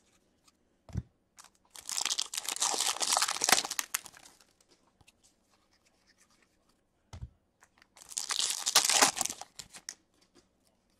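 A stack of Upper Deck hockey cards being flipped through by hand: two bursts of crackling card-on-card rustle, each about two seconds long, with a soft thump shortly before each.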